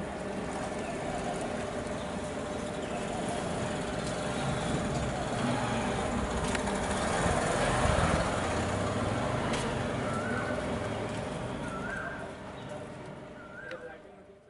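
Outdoor urban background of motor traffic, a steady rumble that swells to its loudest about eight seconds in as a vehicle passes close, then falls away. A few short rising chirps sound near the end.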